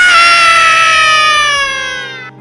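A long, loud, high-pitched cry, held as one note that slides slowly down in pitch and fades near the end.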